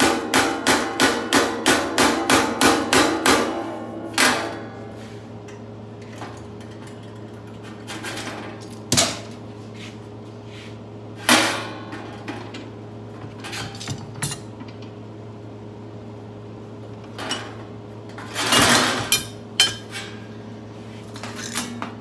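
Polished claw hammer striking the edge of a thin sheet-metal panel in a quick, even run of about a dozen ringing taps, about three to four a second, then one more tap. After that come scattered single knocks and clanks of the sheet and tools being handled, with a short cluster of them near the end.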